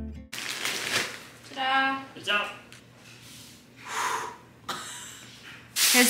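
Rustling and handling of a plastic-wrapped crib mattress, in a few short noisy bursts, with a brief wordless voice sound about two seconds in.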